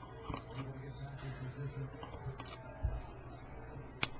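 Small clicks and light scrapes of metal tweezers against a small plastic bottle as a shoelace is worked into its neck, with a dull low bump about three seconds in, over a steady low hum.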